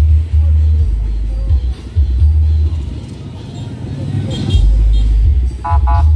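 Heavy bass-driven music blasting from a truck-mounted stack of big speaker cabinets, a 'sound horeg' carnival rig. Long, very deep bass notes shift in pitch, with a softer lull about three seconds in.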